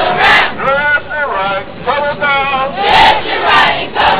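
A group of marching cadets chanting or shouting a cadence together, a string of loud voiced calls with the loudest shouts near the start and about three seconds in.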